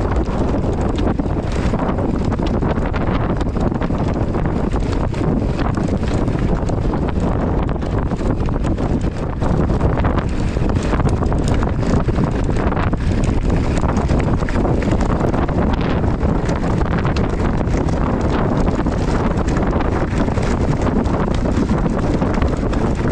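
Heavy wind noise on the microphone of a handlebar-mounted camera on a mountain bike riding down a rough gravel track, with tyres crunching over loose stones and the bike rattling throughout.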